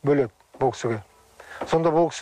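A man speaking Kazakh in short phrases, with a brief pause about halfway through in which a faint steady hum can be heard.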